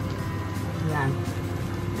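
Soft background music over a steady low hum, with one short spoken word about a second in.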